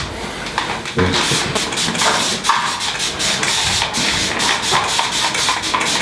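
Aerosol can of competition tanning colour spraying onto skin, hissing in a quick run of short bursts from about a second in.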